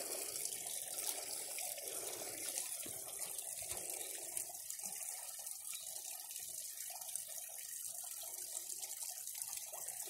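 Small waterfall spilling over stacked stone into a garden koi pond, splashing steadily.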